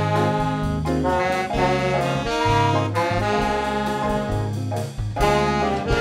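Student jazz band playing live: horns, saxophone among them, over bass and drums.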